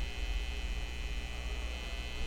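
Low, steady electrical hum and buzz, with no speech over it.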